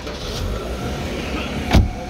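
A Daewoo Nexia's car door being shut, one solid thump near the end, over a steady low whirr.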